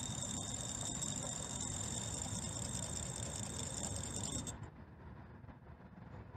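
WaterLink SpinTouch photometer spinning a reagent disk during a test: a steady high-pitched whine, stopping about four and a half seconds in when the test finishes.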